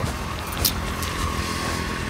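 Road traffic rumbling steadily, with a faint steady whine in the second half and one brief click.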